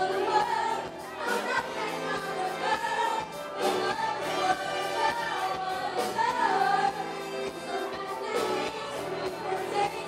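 A group of five women singing together into microphones, backed by a live band.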